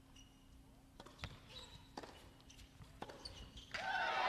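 A tennis point on an indoor hard court: a handful of sharp racket strikes and ball bounces, roughly a second apart, in a quiet hall. Near the end a crowd starts cheering.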